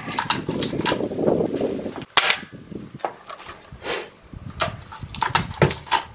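Shots from a .22 Hatsan Blitz PCP air rifle firing pellets at a jar. The loudest sharp report comes about two seconds in, and another comes near the end.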